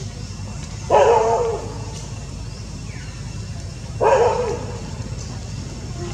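Two loud animal calls about three seconds apart, each lasting about half a second and falling in pitch.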